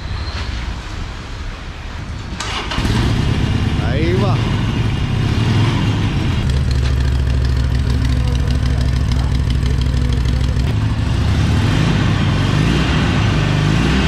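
Harley-Davidson Iron 883's 883 cc V-twin engine starting about three seconds in, then idling steadily.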